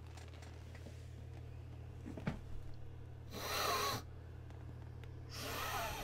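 A man sniffing twice, close to the microphone, each sniff under a second long and about two seconds apart, over a low steady hum.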